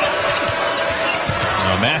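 Basketball dribbled on a hardwood court, the bounces heard over the steady noise of the arena crowd.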